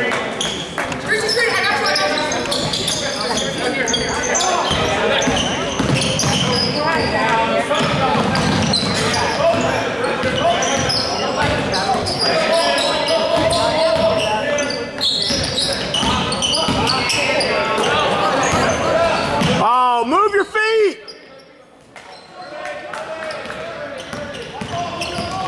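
Basketball game sounds in a large, echoing gym: spectators talking and a basketball bouncing on the hardwood floor. A short wavering call sounds near the end, and then it goes briefly quieter.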